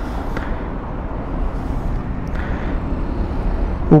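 Water poured from a bottle onto the overheated exhaust and catalytic converter of a Royal Enfield GT 650, sizzling steadily on the hot metal over a continuous low rumble.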